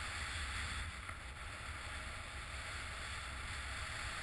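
Wind buffeting the microphone of a head-mounted camera as a skier runs downhill, heard as a steady low rumble, over the continuous hiss of skis sliding across chopped-up snow.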